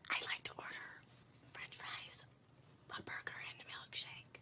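A person whispering in three short phrases.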